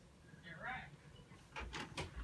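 Videocassette recorder's tape mechanism engaging after Play is pressed, with a faint brief squeak about half a second in, then a run of clicks and low thumps starting about a second and a half in as the tape is threaded and begins to run.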